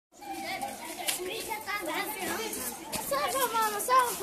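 Several children's voices at once, talking and calling out, with no clear words.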